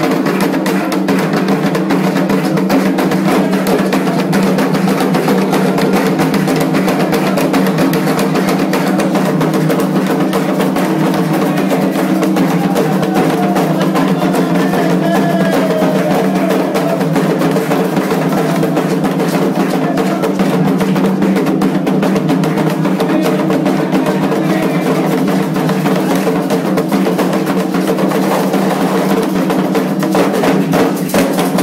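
Candomblé atabaque hand drums playing a fast, dense, unbroken rhythm, the 'rum' drumming that accompanies Ogum's dance.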